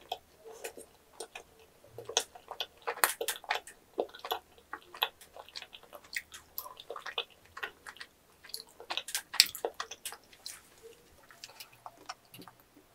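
Close-miked chewing of yakgwa, a chewy honey-soaked Korean fried cookie: a dense run of irregular mouth clicks, busiest about three seconds in and again around nine seconds.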